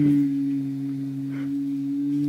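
A man's voice holding one long, steady "aaah" at a low, unchanging pitch, done to get a child to open her mouth wide for a throat check.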